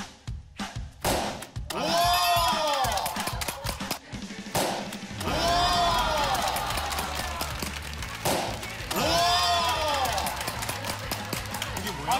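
Folded paper ddakji tiles slapped hard onto the floor in a quick run of sharp smacks, then added background music with three long rising-and-falling swoops.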